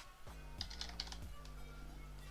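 A few keystrokes on a computer keyboard typing a short word, over quiet background music.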